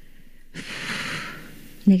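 A single audible breath close to a microphone: a breathy rush starting about half a second in and fading over roughly a second.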